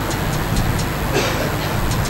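Steady background noise, a hiss with a low hum under it, with a few faint clicks.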